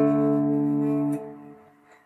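Les Paul electric guitar through a Spark amp ringing with a three-string power chord, fifth string at the fifth fret and fourth and third strings at the seventh fret. The chord's low notes are damped about a second in, and the rest dies away near the end.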